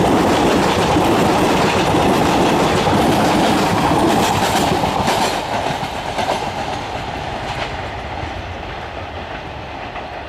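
A passenger train's coaches rolling past on the track, wheels clattering over rail joints. From about halfway it fades as the tail of the train moves away.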